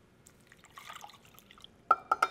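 Water poured from a stainless steel measuring cup into a saucepan over butter and cocoa powder, a soft trickling splash. Near the end comes one sharp metallic clink with a brief ring.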